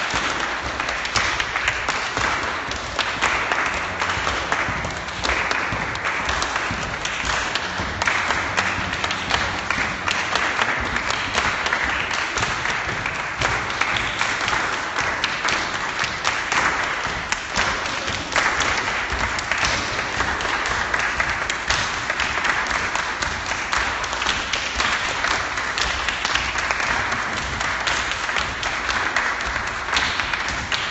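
A crowd of people clapping their hands continuously to accompany dancers, a dense, steady patter of many claps that keeps going without a break.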